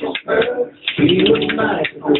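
Spoons played by hand, a quick, uneven run of clicks, with a man's voice vocalising along over them.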